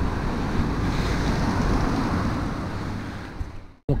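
A steady rushing noise that fades over the last second and cuts off abruptly near the end.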